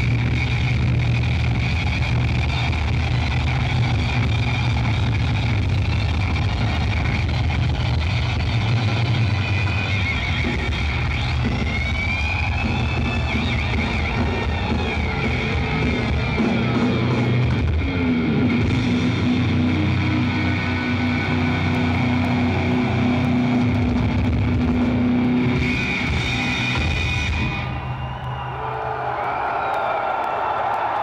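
Heavily distorted electric guitar played loud through Randall amp stacks, with long held notes and pitch bends over a low drone. A pitch glide comes about twelve seconds in, a long held low note rings from about eighteen to twenty-six seconds, and the sound dips briefly near the end.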